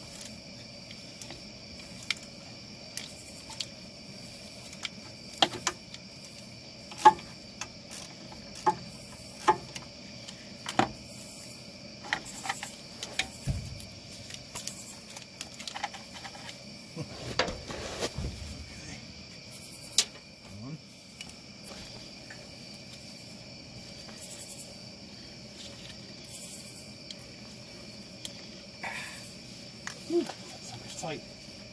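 Ratchet wrench clicking in short, irregular strokes as the 10 mm bolts holding the power steering rack's heat shield are worked loose; the clicks come thickly for the first dozen seconds, then thin out. A steady high-pitched hum runs underneath throughout.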